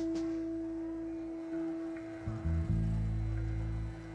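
A single steady amplified instrument note held for about four seconds, with low bass notes coming in about two seconds in, as the band sounds out its instruments before the song.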